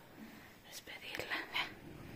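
Faint whispering voices with a couple of soft clicks about a second in.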